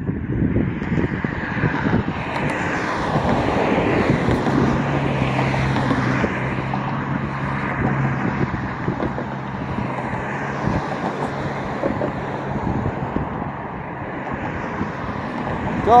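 Street traffic: a vehicle's engine and tyre noise swelling and fading as it passes, with a steady low engine hum lasting several seconds in the middle.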